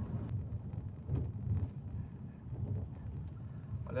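Low, uneven rumble of a car's engine and road noise heard from inside the cabin while driving.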